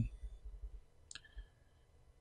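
Faint scattered clicks and soft low thumps, with one sharper click about a second in.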